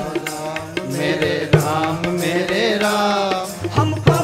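Sikh Gurbani kirtan performed live: men's voices singing a devotional line, with harmonium accompaniment and occasional tabla strokes.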